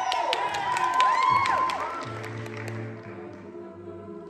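A cappella vocal group singing, with audience whoops and cheers over the first two seconds or so. The voices then fall away to a soft, quiet sustained chord.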